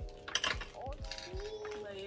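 Background music with held notes over a regular beat.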